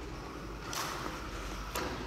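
Faint shoe sounds of a child jumping over cones on a concrete court: a brief scuff about a second in and a light tap near the end, over a low rumble of wind on the microphone.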